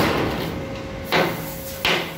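Hammer striking steel plate three times, at the start, about a second in and near the end, with a metallic ring hanging on between the blows.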